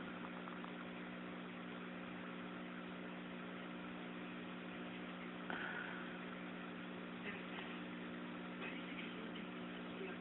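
Steady low electrical hum of several tones over a faint hiss, with a small knock about halfway through and a fainter tick a couple of seconds later.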